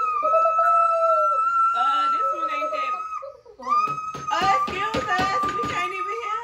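A young child holding a long, high-pitched squeal, with a short breath about three seconds in before squealing again, while other voices chatter over it.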